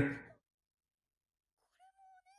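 The end of a man's spoken word fading out, then near silence. About one and a half seconds in, a very faint, high-pitched voice starts.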